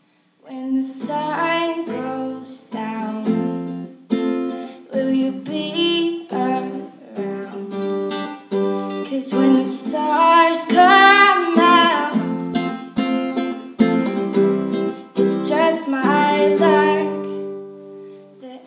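A woman singing to her own acoustic guitar accompaniment, the guitar played with a capo. After a brief gap in the first half-second the guitar comes back in, and the voice swells loudest about ten to twelve seconds in.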